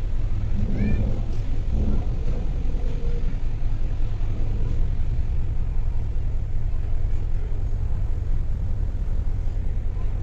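Wind buffeting the microphone on an open ship's deck at sea: a steady low rumble that flutters in loudness.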